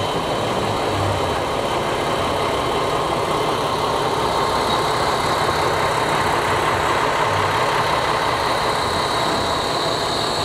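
Steady running and hiss of a railway engine at rest, even in level throughout.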